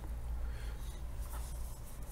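Faint rubbing and scraping handling noise over a steady low hum.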